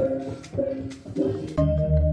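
Balinese gamelan playing, with bronze metallophone tones ringing over light percussion. About a second and a half in, it cuts to background music with a steady, pulsing low beat.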